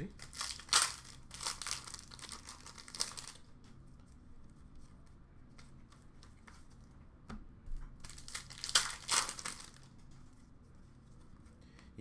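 Plastic wrapper of an Upper Deck hockey card pack crinkling and tearing as it is opened and handled, in two spells: about three seconds at the start, then again briefly a little past the middle.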